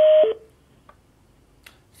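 Conference-call phone system beep: a short, loud tone followed straight away by a fainter, lower one, a falling two-note signal at the very start.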